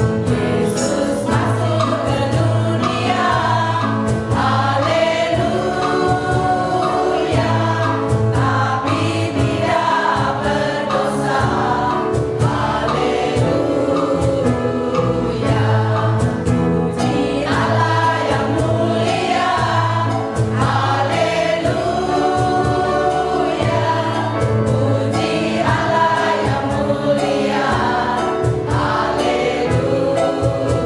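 A mixed choir of men and women singing a gospel song together without a break.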